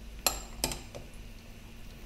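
Two light clinks of kitchenware, about a third of a second apart, shortly after the start, then a fainter third. A faint steady low hum runs underneath.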